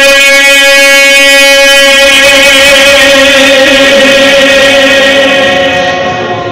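A man's voice holding one long, steady note in a sung qasida, amplified through a microphone and loudspeakers. The note tails off near the end.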